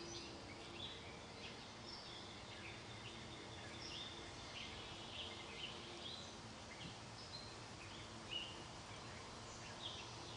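Wild birds chirping faintly, many short high calls scattered throughout, over a steady low background hiss and a faint hum.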